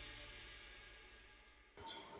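Tail of background music fading away to near silence, with a new sound starting abruptly just before the end.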